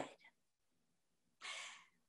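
Near silence, then a woman's short, soft intake of breath about one and a half seconds in.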